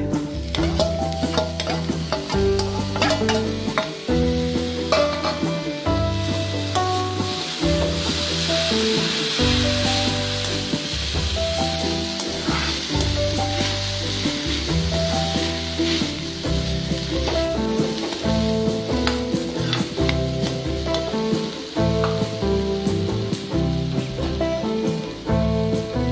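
Boiled banana flower and crumbled dal being stirred and sautéed in a kadai with a steel slotted ladle: a frying sizzle with scraping and clicks of the ladle against the pan, the sizzle loudest in the middle. Background music with a changing bass line plays throughout.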